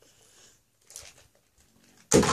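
Near silence, with a faint brief rustle about a second in.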